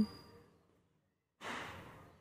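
The fading end of a spoken word, then a short dead silence, then a soft breath drawn in about a second and a half in.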